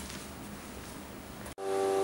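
Faint steady hiss of room noise, then an abrupt cut about one and a half seconds in to background music holding a sustained chord.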